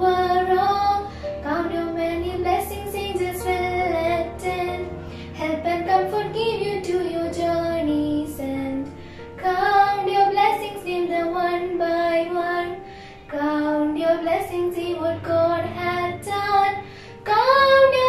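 Two schoolgirls singing a Christian prayer hymn, a slow sung melody in phrases, over a low instrumental backing that fades out about halfway through.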